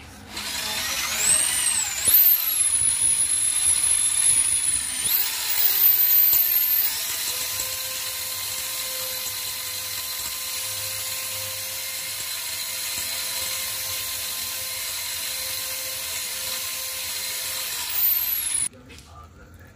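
Corded electric drill spinning a flexible wire cable inside a motorcycle exhaust header pipe to scour out carbon. The motor whine starts about half a second in, rises and wavers in pitch for the first several seconds, then runs steadily.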